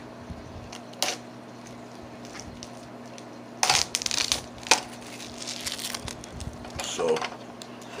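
Protective plastic film being peeled off a small LED aquarium light, with a crinkling rustle about three and a half seconds in and scattered clicks from the plastic fixture being handled.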